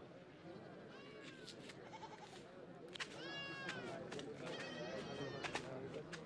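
Faint bleating animal calls, several short ones, the clearest about three seconds in, dipping in pitch as it ends, with a few light clicks between them.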